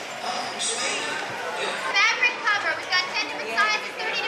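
Crowd chatter in a busy indoor space, with children's high-pitched voices calling out repeatedly from about two seconds in.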